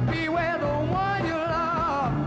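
Live early-1970s rock band playing. A high lead line with wide vibrato bends and glides between notes over thin accompaniment, and the bass mostly drops out for these seconds.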